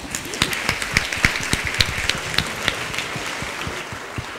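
Audience applauding: many hands clapping together, swelling within the first half-second and thinning out near the end.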